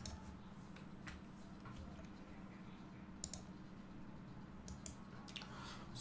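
Faint, scattered clicks of a computer being operated, about six in all, over a low steady hum.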